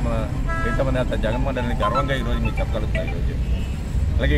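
A man speaking in Telugu over the background noise of street traffic, with a brief steady tone about half a second in.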